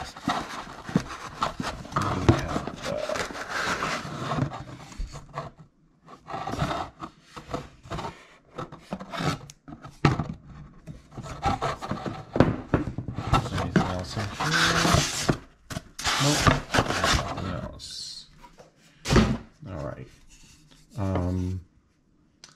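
Unboxing handling: a metal computer dock being worked out of a foam insert in a cardboard box and turned over in the hands. Irregular rubbing, scraping and rustling of foam, cardboard and metal, in uneven bursts with short pauses.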